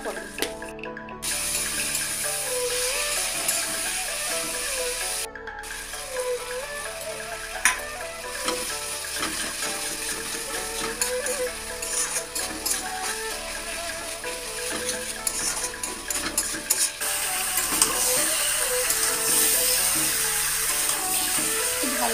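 Background music playing over the sizzle of sliced onions, tomatoes and spices frying in a metal kadai, with a spatula stirring them.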